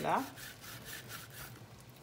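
A kitchen knife scraping and cutting at a goat's head, a faint rasping that comes and goes.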